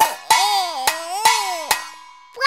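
A baby drumming with spoons on an upturned pot used as a drum, about five strikes in two seconds, with a child's sing-song voice between the strikes.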